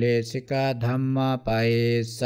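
A man chanting Pali scripture in a steady monotone, holding one pitch throughout, with syllables run together and short breaks between phrases.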